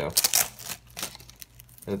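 A cellophane-wrapped binder crinkling and clicking as a hand pushes it into a backpack pocket. A quick run of crackles comes just after the start, followed by a few scattered small clicks.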